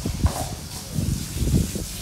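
Clydesdale draught horses in their stalls, hooves thudding a few times on the floor, over a steady hiss.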